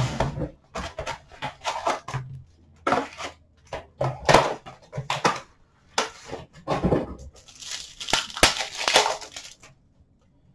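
O-Pee-Chee Platinum hockey card packs being handled and torn open, their wrappers crinkling and tearing in a run of short, irregular rustles.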